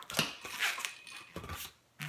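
Inflated latex twisting balloons being handled, rubbing against hands and each other in a series of short scrapes that start suddenly and stop just before the end.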